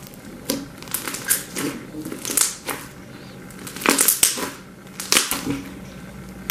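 Pink slime packed with small beads being pressed and stretched by fingers, giving irregular clusters of crackly pops and squishes, thickest about four seconds in.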